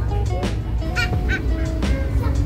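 Steady low drone of a passenger ferry's engines, with background music and a few short high-pitched calls about a second in.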